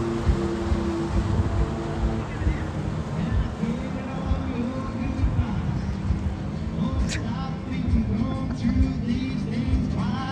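Music with a singing voice over a steady low rumble. Held notes open it, and the wavering sung melody comes in about three and a half seconds in.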